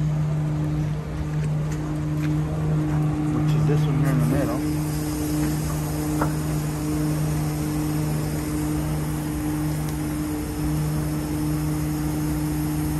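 Truck engine running with the PTO-driven hydraulics engaged, a steady hum; about four and a half seconds in a hiss joins as the hydraulic lever is worked to raise the belt trailer's rear door.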